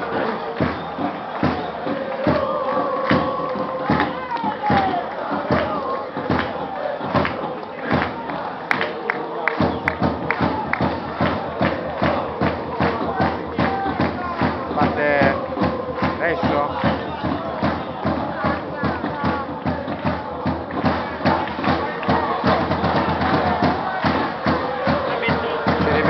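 Football supporters in the stands chanting and singing together over a steady, repeated drum beat.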